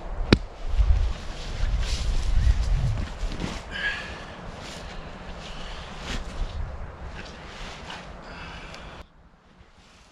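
Wind gusting on the microphone, with rustling and handling noises as a canvas tarp is pitched over grass. A sharp click comes just after the start, and the sound drops away abruptly near the end.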